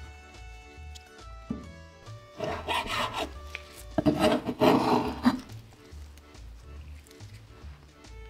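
Chopped cured pork fat being scraped across a wooden cutting board in two passes, about two and a half and four seconds in, over background music.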